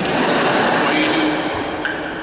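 Audience applauding in a large hall, a dense steady clatter of many hands clapping, with a voice faintly beneath it.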